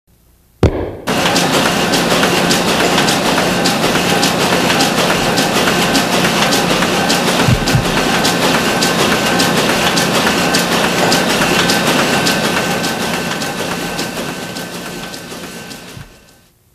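Intro soundscape that opens with a sudden hit about half a second in. It turns into a dense noisy wash full of rapid clicks with a few steady high tones, and fades out over the last few seconds.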